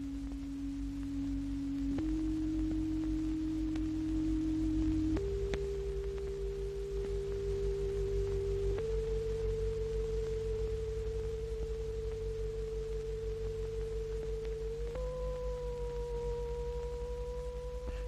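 Electrical hum on a film soundtrack: a low steady hum with a pure tone above it that steps up in pitch several times. A second, higher tone joins near the end.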